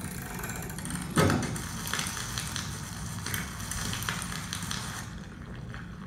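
A single heavy thump about a second in, then a few seconds of fine crackling and crunching that thins out near the end: the amplified sound of a kitchen knife slicing through a soft, rubbery cylinder, played over speakers in a projection room.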